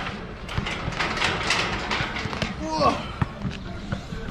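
Scattered knocks and thuds over background voices, with a short pitched call about three seconds in.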